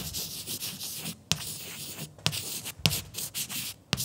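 Chalk writing on a blackboard: a run of short, scratchy strokes with several sharp taps of the chalk against the board.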